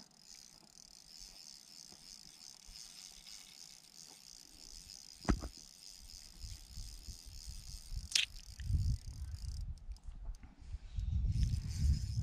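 A fishing reel gives a faint, steady, high-pitched ratcheting whirr while a hooked fish is being played on a bent rod. The whirr stops about nine and a half seconds in. Two sharp clicks come at about five and eight seconds, and low handling rumble follows near the end.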